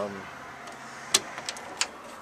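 Three sharp clicks, the first and loudest about a second in, over a steady low background hum.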